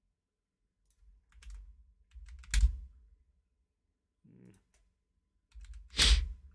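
Typing on a computer keyboard in short bursts of clicks, with a harder key strike about two and a half seconds in and another near the end. A brief low murmur of voice comes about four seconds in.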